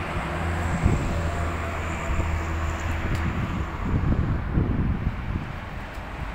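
Steady low mechanical hum with outdoor noise, and a few brief knocks about a second in and again around four to five seconds.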